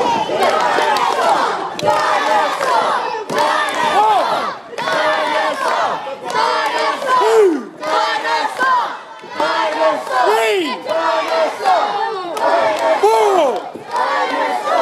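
A crowd of excited children shouting and cheering together in high voices, in waves with brief lulls.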